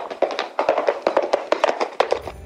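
Rapid, irregular clatter of horse hoofbeats, as in a galloping-horse sound effect.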